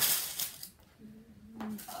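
A sharp click, then a brief rustle as cross-stitch fabric and its packaging are handled, followed by a short hummed 'mm' from the woman in the second half.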